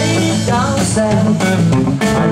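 Live band music: a lead vocal sung into a microphone over electric guitar and bass in a blues-rock groove.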